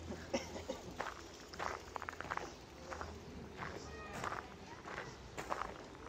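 Footsteps on gravel, faint and irregular, as someone walks at a steady pace.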